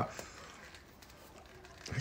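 Mostly quiet room with a few faint handling clicks as hands grip and twist the lid of a small candle container that will not come open.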